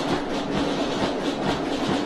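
Military band starting to play: a steady drum beat with a held low brass note underneath.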